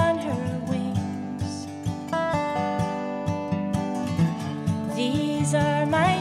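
Instrumental passage of a country-folk song. An acoustic guitar strums chords under a dobro playing a slide melody, with some notes gliding up and down in pitch.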